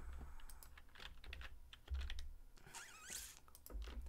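Computer keyboard typing: an irregular run of soft key clicks, with a few dull low thumps.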